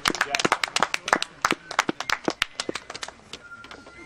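A small group of people clapping by hand, an irregular patter of claps that thins out and fades after about three seconds.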